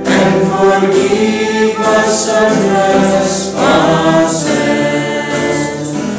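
Choir singing a hymn.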